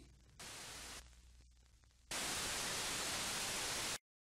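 Static hiss, as from an untuned TV: a short burst about half a second in, then a steady hiss from about two seconds in that cuts off suddenly at the end.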